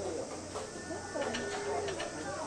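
Indistinct voices of people talking nearby, with a faint thin high squeal and a few light clicks in the second half.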